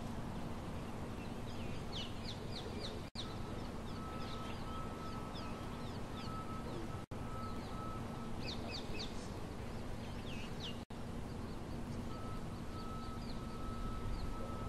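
Small birds chirping in short quick bursts over a steady outdoor hiss with a low hum. A faint high, steady note comes and goes, and the whole sound cuts out for an instant three times.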